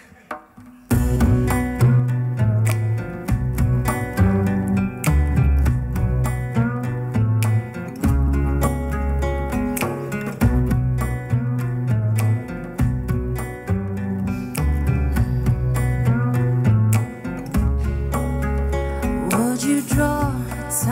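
Instrumental intro of a recorded backing track that starts abruptly about a second in: a repeating bass line, a steady beat and plucked guitar.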